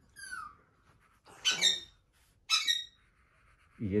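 Permanent marker's felt nib squeaking on paper as it dabs small dots: three short, high squeaks falling in pitch, the first faint and the next two louder.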